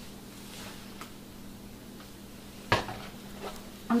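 Quiet handling of cleaning things: a few faint clicks, then one sharp hard knock about two-thirds of the way through and a lighter one shortly after, over a faint steady hum.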